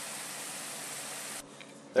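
French fries, jalapeño slices and onion rings deep-frying in peanut oil in a pan: a steady sizzle of bubbling oil. The batch is nearly done, mostly floating and crisping. The sizzle cuts off suddenly about a second and a half in.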